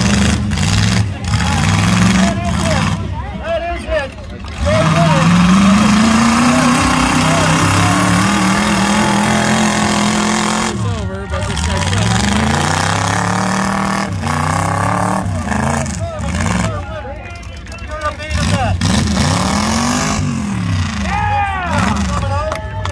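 Demolition-derby pickup truck engines revving repeatedly, the pitch climbing and falling over several seconds at a time as the wrecked trucks push against each other.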